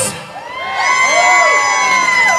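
A live rock band's song cuts off right at the start, and a crowd cheers and whoops, children shouting among them. About a second in, one long high-pitched whoop is held.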